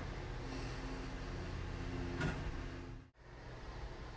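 Faint steady room hum with a few quiet steady tones under it, and a small faint sound a little after two seconds. The sound drops out to silence for a moment about three seconds in.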